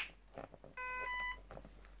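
A sharp snap as the battery plug is pushed into the electric skateboard's ESC connector and sparks on contact. About a second later come two short electronic beeps, the second higher than the first: the brushless motor controller's power-up tones.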